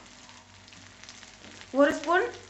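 Ginger-garlic paste frying in hot oil in a non-stick kadai: a soft, steady sizzle. A voice starts near the end, with a brief click just before it.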